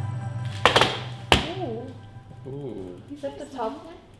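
Background music fades out, then two sharp clunks about a second in as a metal baking tray of cookies is set down on the counter. Voices follow with drawn-out, wavering exclamations.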